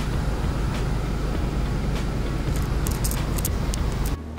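2007 Honda Civic Si's four-cylinder engine idling steadily, heard from inside the cabin.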